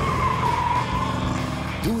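Car tyres squealing during a burnout: one long high squeal that sags slightly in pitch and fades near the end, over the engine running.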